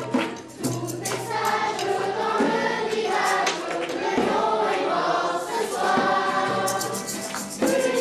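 Children's choir singing a song together, accompanied by a strummed acoustic guitar, with sharp rhythmic strokes throughout.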